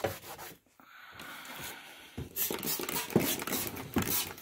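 Cloth rag rubbing and wiping on a kerosene heater's metal parts, with scattered handling clicks; the rubbing grows busier about two seconds in.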